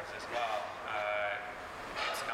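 A man talking, with one drawn-out syllable held steady about a second in.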